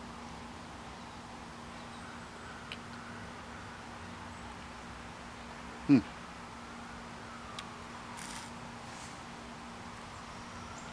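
Quiet outdoor background with a faint steady hum, broken once about six seconds in by a man's short, falling "hmm" as he considers the taste of a beer.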